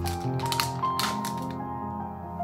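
Soft background music with held tones, over a few light sharp clicks and taps from hands handling a stainless-steel tray of cookie dough as its cling film is pulled off. The clicks come close together in the first second.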